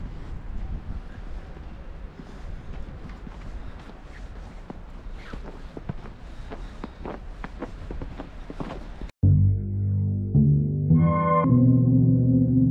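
Footsteps crunching through snow, a run of short crisp steps over a low steady rumble of wind on the microphone. About nine seconds in this cuts off suddenly and loud background music with synthesizer and guitar-like notes takes over.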